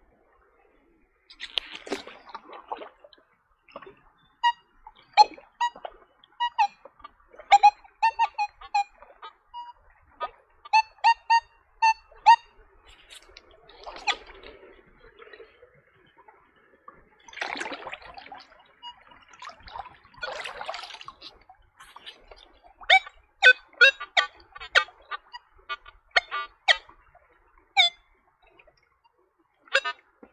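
Nokta Legend metal detector sounding short pitched target beeps in quick runs, several at a lower pitch near the end, with a few swishes of water between them.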